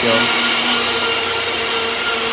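Electric spice-grinding machine running steadily, a constant motor hum with a higher whine over a hiss, as it grinds spices such as cumin and coriander to powder.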